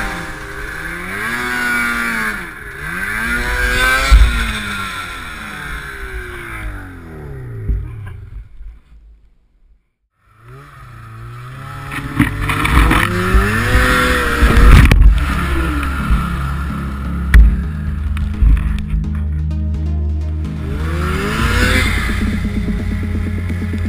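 Snowmobile engine revving up and down again and again as the sled works through deep snow. It fades out about eight seconds in, is nearly silent for a couple of seconds, then comes back revving and climbing in pitch, with music underneath.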